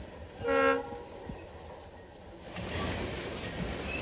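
A locomotive horn gives one short blast about half a second in. From about two and a half seconds the rolling noise of the covered hopper cars on the rails grows louder as they pass close by.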